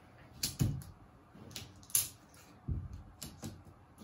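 A few scattered light clicks and taps, with a soft thump about three seconds in, as cutout numbers are pulled off a wall and pressed back onto it.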